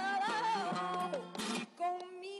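A woman singing flamenco with long, wavering, ornamented held notes over acoustic guitar. Her line falls away a little after a second in, a brief guitar strum and a short lull follow, and her singing resumes near the end.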